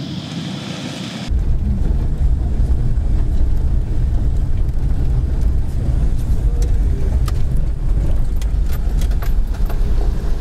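Wind on the microphone for about a second, then the loud, deep rumble of a car driving on a dirt road, heard from inside the cabin, with scattered sharp clicks and knocks in the second half.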